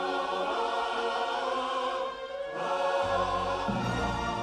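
Choir singing sustained chords over an orchestral film score, with deeper bass notes coming in about three seconds in.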